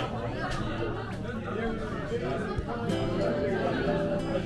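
Diners talking all at once in a busy restaurant, a steady murmur of many voices, with background acoustic guitar music coming in near the end.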